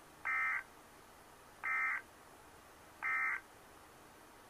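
Emergency Alert System digital data tones: three short, identical buzzy bursts about a second and a half apart. This is the end-of-message code sent after the severe thunderstorm warning.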